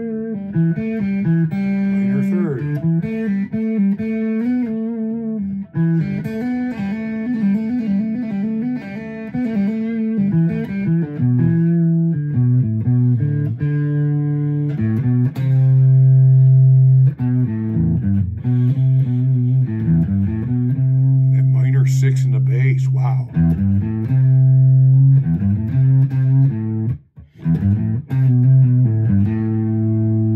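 Semi-hollow electric guitar playing an E minor blues shuffle in open position: repeated low-string notes and riffs, with a sliding, falling phrase about two to three seconds in and a brief break near the end.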